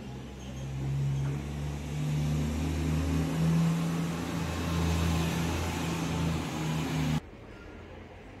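A motor vehicle's engine running, a steady low hum that grows louder over the first couple of seconds and cuts off abruptly about seven seconds in.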